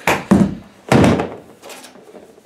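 Oak-framed sled being turned over and set down on a wooden workbench: two heavy thuds about half a second apart, the second the loudest.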